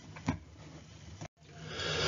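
A pause in a man's spoken narration: faint room tone with a short click about a third of a second in, then a sudden dropout to dead silence just past halfway, where the recording is cut. A faint hiss rises near the end.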